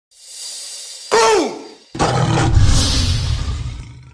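Intro logo sting made of sound effects: a rising whoosh, then a short pitched sound that falls steeply in pitch about a second in, then a loud hit about two seconds in with a low rumble that fades out.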